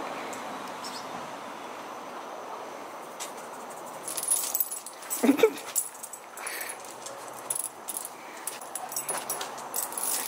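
A dog whimpers briefly about five seconds in, amid light metallic jingling from its chain collar and leash as it moves.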